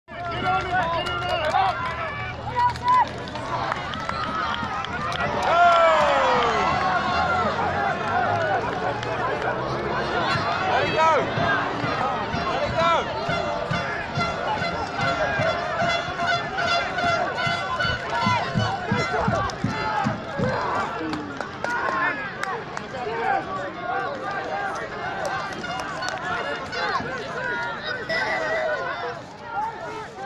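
Rugby sideline crowd shouting and calling out, many voices overlapping, with one loud falling shout about six seconds in.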